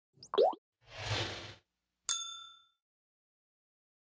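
Intro sound effects over the opening title card. First a short rising bloop, the loudest sound here, then a whoosh lasting about a second, then a bright, bell-like ding that rings out for about half a second.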